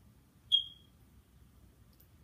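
A single short high-pitched chirp about half a second in, fading quickly; otherwise near silence.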